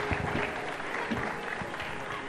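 Audience in an auditorium applauding, a steady spell of clapping from many hands.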